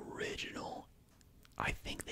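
A man whispering close to the microphone, with a short pause in the middle.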